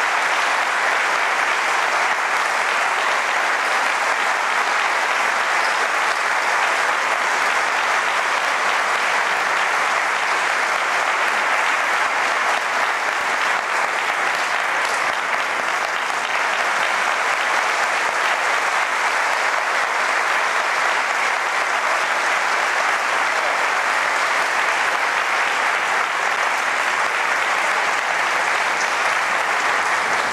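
Theatre audience applauding, a steady, sustained ovation of many hands clapping at an even, full level.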